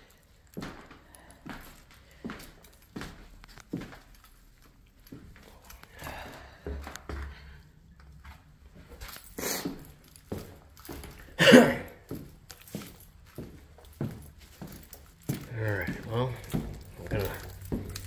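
Footsteps on a gritty, debris-strewn floor at a walking pace. A single short, loud cry-like sound comes about eleven seconds in, and there is low muttering near the end.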